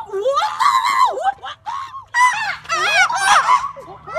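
Young women's high-pitched screams and squeals: several short cries in a row, their pitch swooping up and down.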